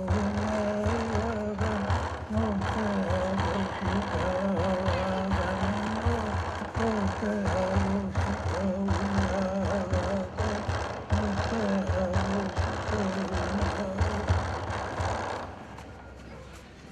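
Traditional Innu hand drum beaten in a quick, steady beat while a man sings a wavering chant over it. The drumming and singing stop shortly before the end.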